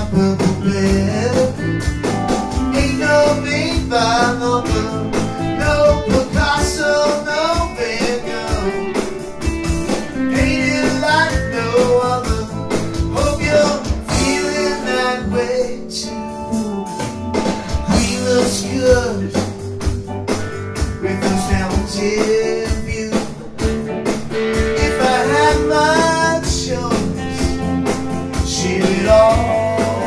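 A live rock band playing: electric guitars, bass guitar and drum kit, with a lead melody that slides in pitch over them.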